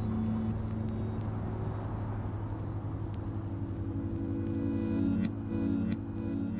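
Steady road and engine noise of a moving car, an even rush over a low hum. Faint music comes back in during the second half.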